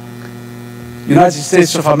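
Steady electrical mains hum on the sound system during a pause, then a man's amplified voice speaking into the podium microphone from about a second in.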